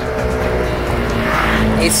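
Motor scooters in street traffic, their small engines running over a low traffic rumble, one swelling louder as it passes about halfway through.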